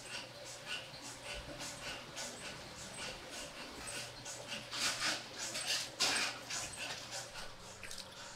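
Soft rustling and scraping of sesame-coated dough balls being picked up and set down by hand on a cloth-lined tray: a run of short, irregular rustles, loudest about five to six seconds in, over a faint steady low hum.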